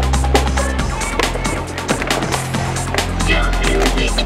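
Electronic music with a steady beat and bass line, over the clatter of a skateboard on flat pavement: the board knocking as it is tipped and set down, and its wheels rolling.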